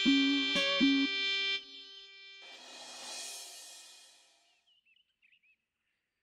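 Background music score: held instrumental notes with a few plucked notes, breaking off about a second and a half in. Then a soft rush of noise swells and fades out by about four and a half seconds, leaving near silence.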